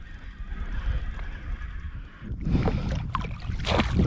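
Wind rumbling on the microphone, then from about halfway in, water splashing from a hooked brown trout fighting near the surface close to shore.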